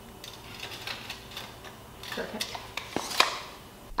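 Scattered light clicks and taps from hand tools being handled on a wooden chair frame, a tape measure among them.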